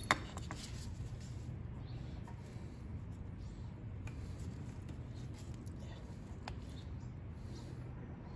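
Faint, scattered clicks and small handling sounds from needle-nose pliers clamping the rubber fuel line at a Honda GX200 carburettor, over a steady low hum.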